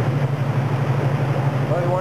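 Off-road buggy engine running at a steady low speed as it crawls through a rocky creek, over the rush of creek water splashing around its tires.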